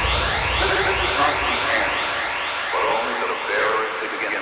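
Electronic music with the beat dropped out: a siren-like synth sweeps upward over and over, several times a second. Warbling, pitch-bent voice-like sounds come in during the second half, while the bass fades away.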